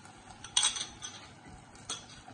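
A metal spoon scraping and clinking against a ceramic bowl as thick coconut milk is poured out of it into a pot. There is a short clatter about half a second in and a single sharp clink near the end.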